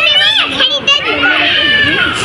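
Young children's high-pitched voices, chattering and calling, with one drawn-out cry held through the second half.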